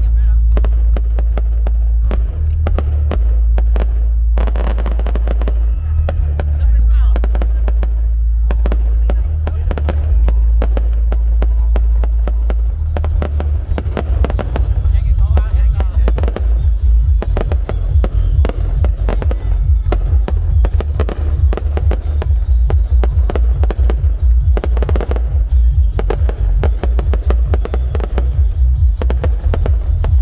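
Aerial firework shells bursting one after another with crackling, thickening to a near-continuous barrage about halfway through, over a steady heavy low rumble.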